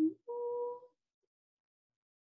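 A woman's voice: a brief syllable, then a playful 'ooh' held on one steady note for about half a second.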